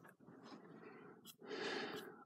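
Faint breathing close to the microphone, with a louder breath about a second and a half in.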